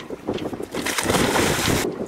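Wind blowing across the microphone, with the sea moving around a sailboat's hull; the rushing noise grows louder through the middle and cuts off abruptly near the end.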